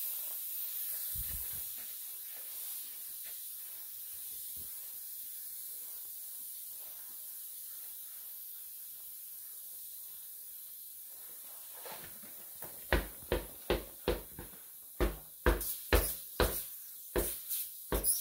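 Air hissing steadily out of a punctured tubeless mountain bike tyre, the leak not yet sealed by the sealant, slowly getting quieter. From about thirteen seconds in, a quick run of thumps, two to three a second, as the wheel is knocked against the wooden floor.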